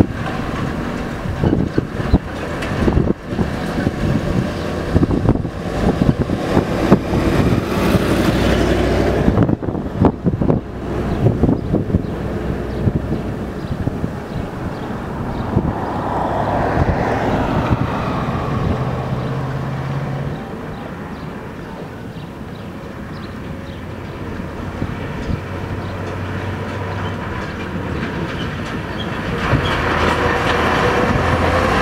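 Heavy trucks driving past on a rough, broken road with their diesel engines running, their bodies rattling and banging over the bumps. Clattering knocks crowd the first dozen seconds. After that a steadier engine sound swells, fades, and rises again near the end as a dump truck comes close.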